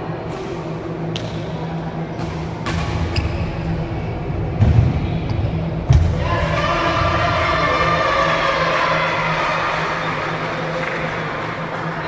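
Badminton rally in an echoing hall: several sharp racket-on-shuttlecock hits about a second apart, and two heavy thuds of players' feet landing on the wooden court a little before and at about six seconds in. After the last thud, a sustained pitched sound sets in, which is music or voices.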